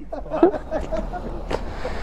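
Quiet talking in the background over a low steady rumble, with a single short click about one and a half seconds in.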